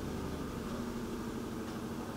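Steady low hum with a faint hiss: background noise picked up by the microphone, with no distinct events.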